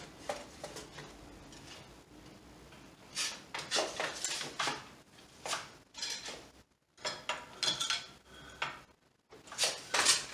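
A four-shaft floor loom being worked: after a quiet first few seconds, several bursts of short wooden clacks and rattles as the shafts, beater and shuttle move to weave a weft pick.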